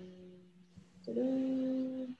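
A woman's drawn-out hesitation "um" trails off. About a second in comes a second steady, hummed "mmm" lasting about a second.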